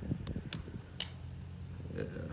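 A motor on the boat running with a steady low hum. Two sharp clicks come about half a second apart, near the middle.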